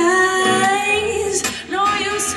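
A woman singing long held notes live, accompanied by her acoustic guitar.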